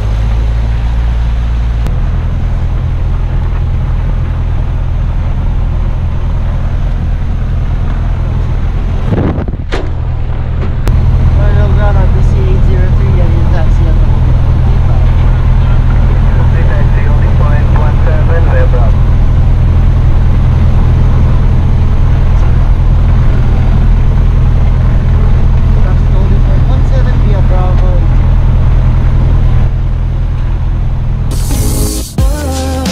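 Cessna 172's piston engine running at idle, heard inside the cockpit as a loud steady low hum. About ten seconds in there is a brief break, after which it runs louder.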